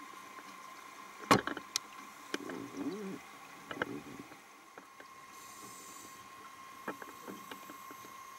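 Muffled underwater sounds at a shark-diving cage: a sharp knock about a second in, then several softer clicks and knocks, and a short wavering gurgle around two to three seconds, over a faint steady hum.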